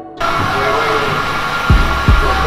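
Electric heat gun blowing steadily, a loud rushing hiss with a thin motor whine in it, starting abruptly just after the start. A hip hop beat's kick drum comes in under it near the end.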